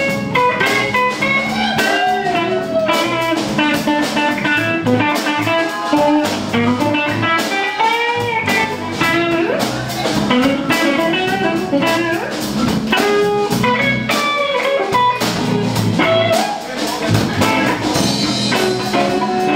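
Live soul band playing a slow R&B number, with electric guitar prominent over electric bass and drum kit.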